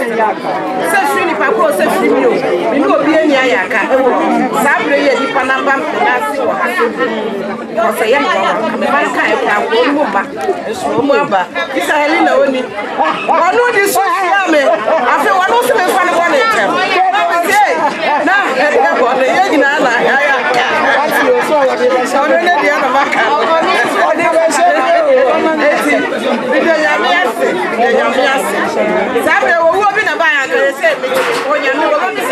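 Speech only: a woman talking into a microphone, with other voices chattering around her.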